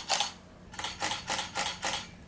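Camera shutter firing in quick succession: one click, then a run of about five clicks at about four a second, the camera shooting in continuous burst mode.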